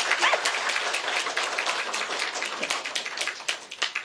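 Audience applauding: a dense, steady patter of many hands clapping that stops near the end.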